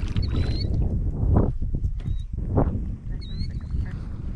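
Small bass splashing at the surface as it is reeled to the boat and lifted out, two louder splashes about a second and a half and two and a half seconds in, over a steady low rumble of wind and water on the microphone.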